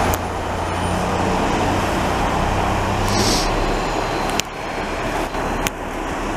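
Heavy diesel engines of a snowblower and dump trucks running steadily during street snow removal, a low drone under a dense rumble. A short hiss of air comes about three seconds in.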